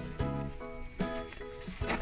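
Soft background music: a run of held notes, each changing to the next every few tenths of a second.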